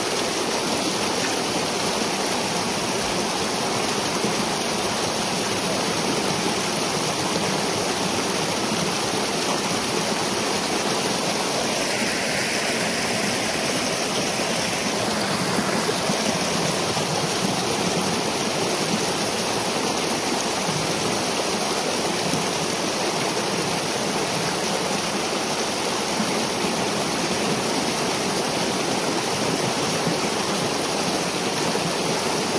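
Pond water rushing and churning through a breach in a peat beaver dam as the pond drains. A steady, unbroken rush of water.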